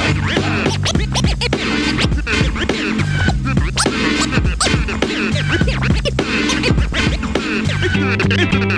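Hip-hop scratching on vinyl turntables: fast rising and falling scratches from a record pushed back and forth by hand, chopped on and off with the mixer's crossfader, over a steady looping beat and bassline.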